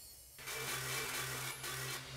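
A low, steady hum, a sound-design drone, that starts abruptly about half a second in, after the tail of the previous sound has faded. It holds one low pitch with a faint hiss above it.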